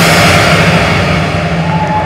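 Hardcore electronic DJ set playing loud through a concert sound system, heard from the crowd: a steady low drone under a dense, distorted mix, with the high end fading away near the end as a filtered transition into the next section.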